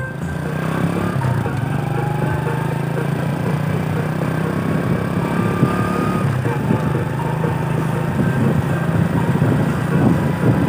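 A vehicle engine running with a steady low drone while driving along a road, with faint music under it.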